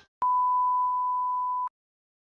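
A single steady electronic beep, one pure tone held for about a second and a half, which cuts off suddenly.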